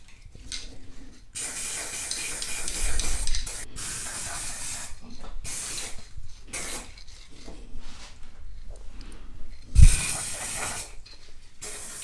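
Aerosol spray-paint can hissing in a series of bursts as white paint is sprayed onto small plastic motion-detector parts. A short, louder burst near the end starts with a knock.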